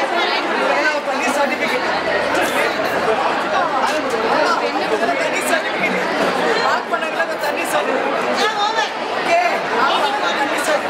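Several people talking over one another: steady overlapping chatter of a small group.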